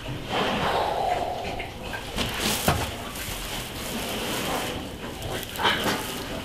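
Pigs grunting and moving about in a barn pen as a piglet is picked up, with rustling and a sharp knock a little under three seconds in.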